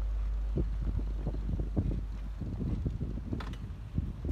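Wind rumbling on the microphone while riding a pedal car, with irregular knocks and rattles from the vehicle rolling over the road. The low rumble is heaviest in the first half-second.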